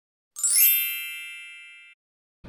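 Sparkle-and-chime sound effect for a title-card logo: a quick rising glittery shimmer that settles into a bright ringing chord, fading away and cutting off just before the end.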